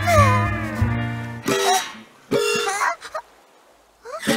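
An animated cat character vocalising in meow-like calls over background music. The music stops about a second and a half in, and two short calls follow.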